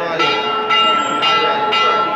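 Temple bells struck again and again, their metallic tones ringing on and overlapping, with a fresh strike every half second to a second.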